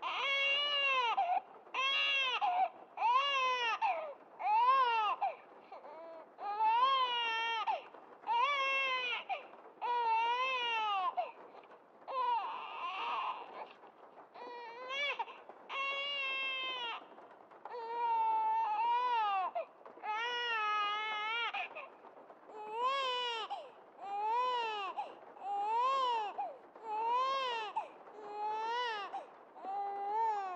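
A baby crying in a long run of short cries, about one a second, each rising and falling in pitch, with a couple of brief pauses and one rougher, hoarser cry midway.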